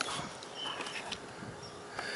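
Quiet outdoor background of low hiss with a few faint, short high chirps from small creatures, and a click right at the start.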